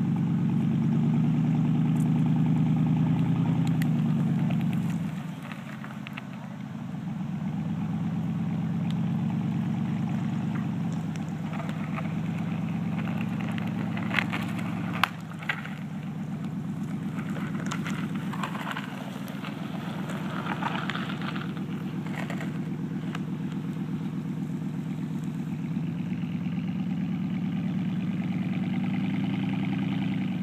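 Chevy Silverado pickup's engine pulling under load as it drags a fallen tree trunk across the ground on a tow strap. The engine eases off about five seconds in and then builds again. Two sharp clicks sound around the middle.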